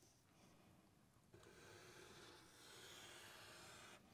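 Near silence: faint room tone, with a very faint hiss from about a second in.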